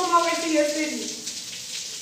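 Shower spray running as a steady hiss, with a person's voice over it for about the first second, then the water alone.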